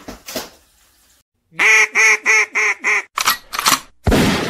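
Duck-like quacking, five quick quacks in a row, each dipping in pitch, followed by two short harsh bursts near the end.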